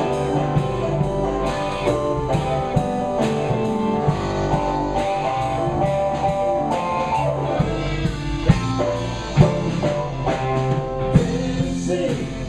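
Live rock band playing: electric guitars, bass, keyboard and drum kit keeping a steady beat. A voice comes in singing near the end.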